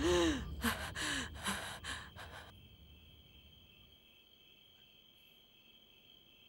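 A woman breathing hard with short voiced gasps and sighs, about six of them falling in pitch over the first two and a half seconds. After that there is only a faint, steady chirring of crickets.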